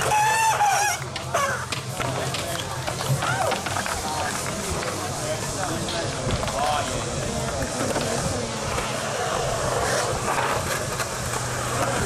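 Crowd voices with a loud shout in the first second, over the rolling rumble of skateboard wheels on a concrete bowl.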